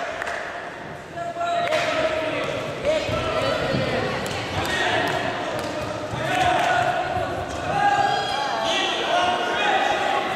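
Several voices calling and shouting, echoing in a large sports hall, with scattered thuds and knocks.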